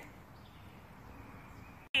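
Faint, steady woodland background hiss with no distinct calls. It drops out suddenly just before the end, and a voice begins.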